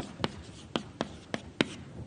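Chalk writing on a blackboard: a series of about six sharp taps and short strokes as a few symbols are written.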